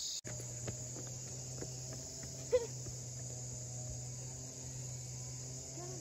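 Insects chirring steadily in a high-pitched, continuous drone, over a low, steady hum. A brief, sharp sound stands out about two and a half seconds in.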